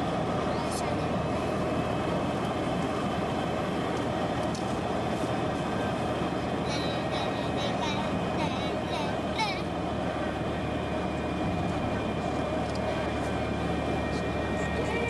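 Steady road and engine noise heard inside a moving car, with a child's voice coming in briefly about halfway through.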